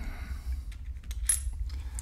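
A few small metallic clicks of a coin handled between the fingers, the clearest a little over a second in with a brief high ring, over a steady low rumble.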